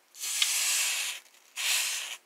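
Hot soldering iron tip sizzling as it is pressed against an alcohol-wet cloth, the alcohol flashing off. There are two hisses: the first lasts about a second, the second starts near the end.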